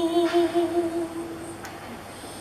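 A woman singing a Greek traditional song, holding one long note with a slight waver that fades away about a second and a half in.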